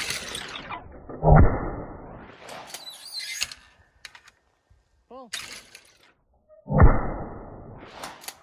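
Two shots from a Remington 870 Tac-14 12-gauge pump shotgun fired at thrown clay targets, about a second and a half in and again near seven seconds, each a sharp report that trails off.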